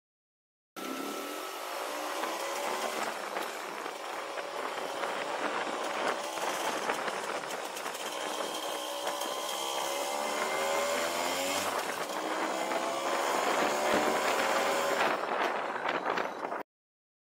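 Vespa VBB's 150 cc two-stroke single-cylinder engine pulling away and accelerating, its pitch rising and dropping back several times through the gear changes, with wind rushing over the microphone. The sound starts abruptly just under a second in.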